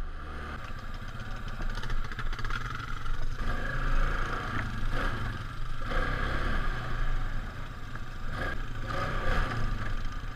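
Polaris Sportsman 570 ATV's single-cylinder engine running on the move, the throttle rising and easing a little, with clatter as the quad goes over bumps.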